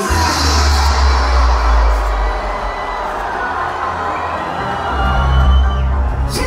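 Live concert music through a large PA system, with a deep bass that hits right at the start, drops back around the middle and comes back in near the end, over a cheering crowd.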